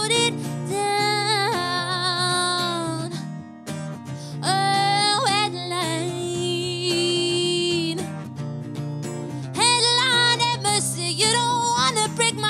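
Live acoustic music: a woman's voice singing long held notes with vibrato over a strummed acoustic guitar.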